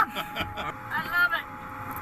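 Excited crew voices in a small capsule cabin: a short, high-pitched exclamation or laugh about a second in, over a steady electrical hum.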